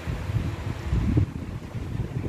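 Air from a running electric fan blowing across the microphone: a gusty, uneven low rumble. The fan is loud, likened to an airplane turbine.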